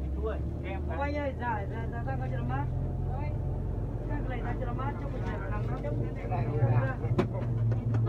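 Inside a coach's cabin: the bus engine's steady low drone, with people talking over it and a single sharp click about seven seconds in.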